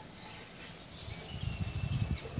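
Quiet outdoor background, then low, irregular rumbling knocks from about halfway in as the portable satellite dish is handled and moved on its tripod, with a faint thin high note over it near the end.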